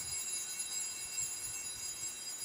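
Altar bells ringing at the elevation of the host: several high, clear tones that ring on steadily, signalling the consecration.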